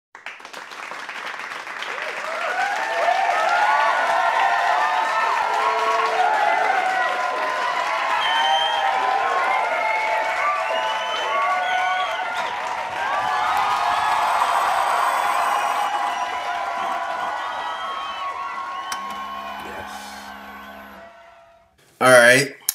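A crowd of many voices chattering and cheering together, fading in over the first few seconds and fading out toward the end. A short low hum comes in near the end.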